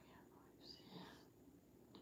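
Near silence: room tone, with one faint, soft breathy sound a little before the middle.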